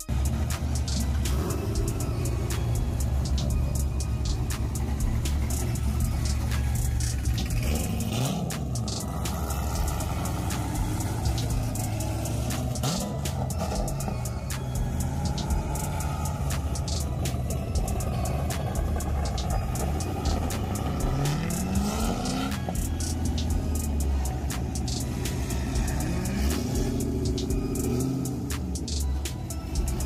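Chevrolet C6 Corvette V8 engines rumbling at low speed as the cars roll past, with several short revs that rise in pitch. Music plays underneath.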